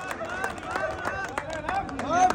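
Quiet talking among a small group of people, with scattered short sharp clicks.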